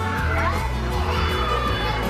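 Several children shouting and calling out at once, their voices overlapping, over background music with a steady bass line.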